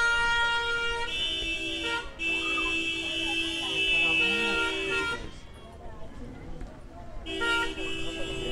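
Vehicle horn honking in long, steady blasts: two short ones of about a second each, then a longer one of about three seconds. After a pause of about two seconds another starts near the end. Faint voices murmur underneath.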